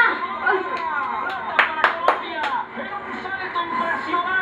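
Hands clapping in a few sharp, uneven claps during the first two and a half seconds, with excited voices going on underneath.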